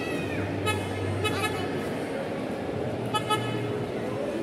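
Electronic horn of a children's battery-powered ride-on toy jeep giving short beeps: a couple of beeps about a second in and a quick pair near the end, over the murmur of a crowd.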